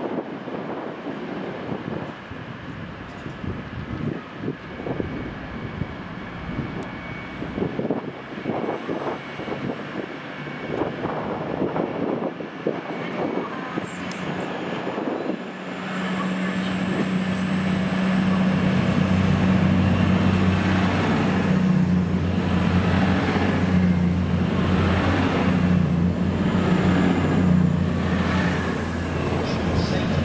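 Class 222 Meridian diesel multiple unit at a station platform: an uneven rumble with scattered knocks as the train rolls along, then, about halfway through, its diesel engines settle into a louder steady drone with a hum. Over the drone a thin high whine climbs in pitch for several seconds and then holds steady.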